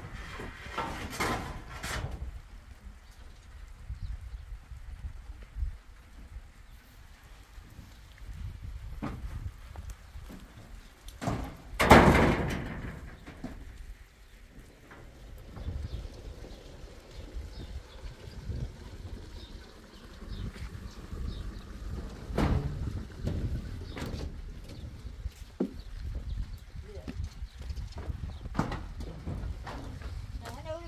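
Irregular knocks and footfalls on a shed roof of sheet metal and wooden poles as a man works on it, over a low rumble. A louder burst of noise lasting about a second comes around twelve seconds in.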